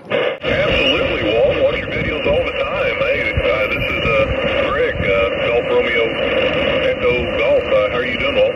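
A distant station's voice on HF single-sideband coming through a Xiegu G90 transceiver's speaker. The voice sounds thin and cut off above the treble, with steady band noise under it.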